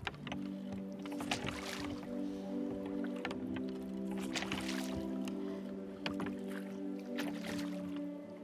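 A sustained musical chord of several held low notes, with water splashing and lapping against a wooden boat's hull in swells about every three seconds.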